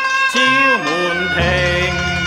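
Cantonese opera song (粵曲) music: a sustained melody line held with vibrato that slides down in pitch about half a second in, then moves to a new held note about a second and a half in, over low accompaniment.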